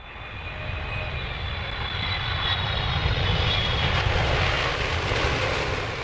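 Airplane engine noise of a fixed-wing aircraft passing: a dense rushing noise with a faint high whine that falls slightly in pitch, swelling to its loudest about four seconds in and then beginning to fade near the end.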